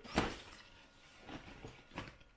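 Woven straw handbags rustling and knocking against each other as they are handled and fitted together, with one sharp rustle just after the start and a few softer ones later.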